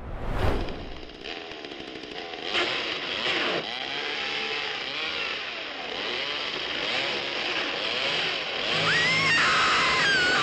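Chainsaw running and revving up and down repeatedly, in a horror film's soundtrack, after a brief whoosh at the start. Near the end a high wavering cry, like a woman's scream, rises over it.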